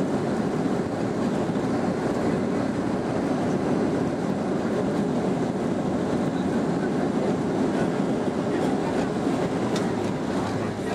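Boeing 737-800 cabin noise during the landing rollout: a steady roar and rumble as the jet rolls down the runway with its ground spoilers up, heard inside the cabin over the wing.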